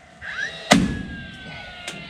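A staple gun fires once with a sharp snap and short thud about two-thirds of a second in, followed by a smaller click near the end.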